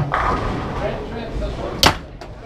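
Foosball ball being struck by the plastic men and hitting the table: a sharp clack right at the start and a louder, ringing clack near the end, over room chatter.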